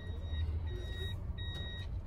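Electronic warning beeps from a vehicle, one even tone repeating three times about two-thirds of a second apart, over the low rumble of the engine heard inside the car's cabin.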